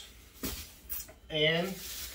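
Plastic bag crinkling as it is set down on a wooden cutting board: two short rustles in the first second.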